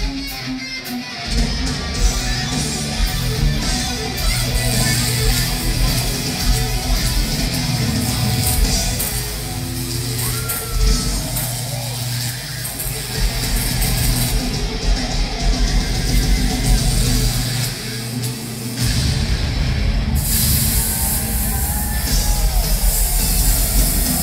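Live hard rock band playing loud through a concert PA: electric guitar over heavy bass and drums, heard from among the audience.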